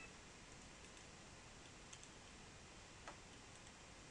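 Near silence: faint room hiss with two faint computer-mouse clicks, about two seconds and three seconds in.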